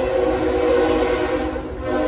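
Train horn sounding a long, steady multi-tone chord as a train passes, with the low rumble of the train underneath; the horn dips briefly near the end.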